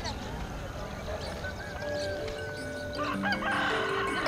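A rooster crowing, with soft music coming in about halfway through.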